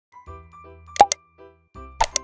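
Short channel intro jingle of bouncy, evenly repeated notes over a steady bass. About a second in, two sharp click sound effects come close together: the animated subscribe button being pressed.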